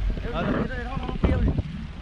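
Wind buffeting the microphone as a steady low rumble, with two short snatches of a man's voice.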